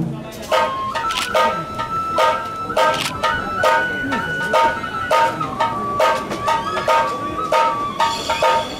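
Japanese kagura accompaniment: a bamboo flute playing long held high notes that step in pitch, over steady drum strokes about two a second.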